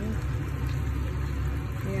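A steady low machine hum, like a fan running, with a woman saying a word near the end.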